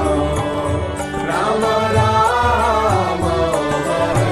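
Devotional mantra chanting set to music: a sung melody over instrumental backing and a steady percussion beat.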